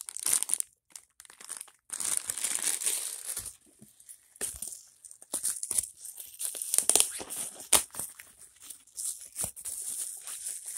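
Clear plastic packaging bag crinkling as it is handled, in irregular bursts with sharp clicks and short pauses.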